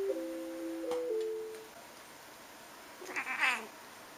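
A short run of steady, overlapping notes that step between a few pitches, followed about three seconds in by a cat meowing once, the call falling in pitch.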